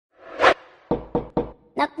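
A quick whoosh, then three sharp knocks on a door about a quarter second apart: a door-knock sound effect.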